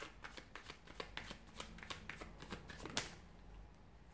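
A deck of tarot cards shuffled by hand: a quick run of soft card flicks and clicks, with one sharper snap about three seconds in.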